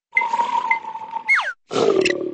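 Cartoon character voice and sound effects: a held note, then a quick whistle-like downward slide, then a grunting vocal sound near the end.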